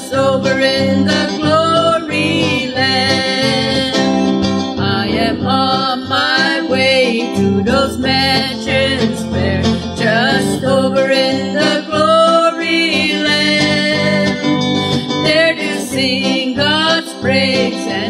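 Two women singing a country gospel song together over a guitar-led country accompaniment.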